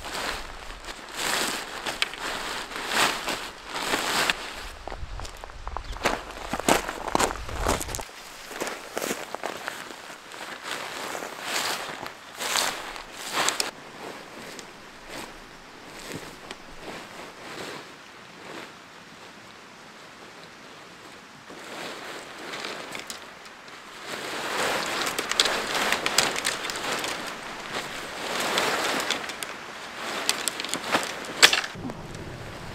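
Nylon tent fabric rustling and crinkling in irregular bursts as it is spread out and handled, with footsteps crunching on gravel and the odd click of an aluminium tent pole. It quietens for a while in the middle and gets busy again near the end.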